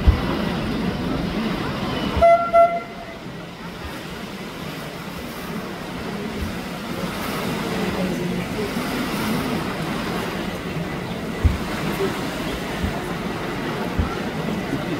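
Two short horn toots about two seconds in, over a steady low rumble and voices on board a river tour boat.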